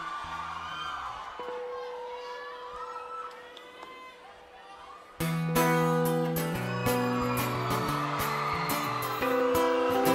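A song intro played live on acoustic guitar. The first few seconds hold quiet, soft guitar notes, one of them sustained. About five seconds in, loud strummed chords start suddenly and go on in a steady rhythm.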